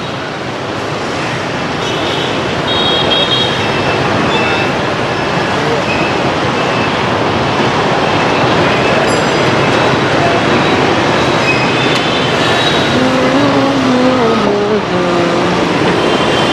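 Dense street traffic, mostly motorbikes and a few cars passing close by, a steady din that grows louder over the first few seconds. Near the end a pitched sound slides down in pitch over the din.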